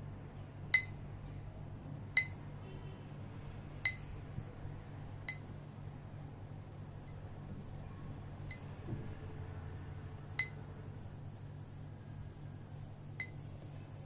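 CMF Watch Pro 2 smartwatch speaker giving short high beeps as its notification volume is adjusted, about eight in all and spaced a second or two apart. Some beeps are louder and some fainter, following the volume setting.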